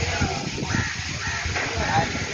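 Crows cawing a few times over the low, gusty rumble of sandstorm wind on the microphone.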